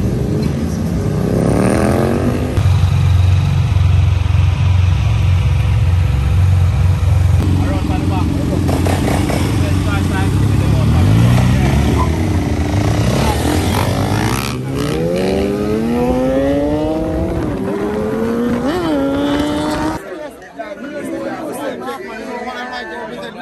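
Motorcycle and three-wheeled motorcycle engines accelerating, their pitch climbing again and again as they rev up, with a steady low engine drone in between. The engine sound stops about twenty seconds in.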